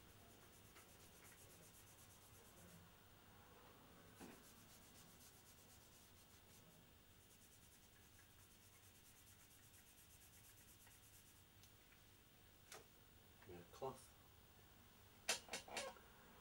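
Faint, quick back-and-forth rubbing of a tissue over pencil graphite on a carved model plane, polishing the graphite to a metallic finish, in two spells of rapid strokes. A few short knocks come near the end, the loudest sounds here.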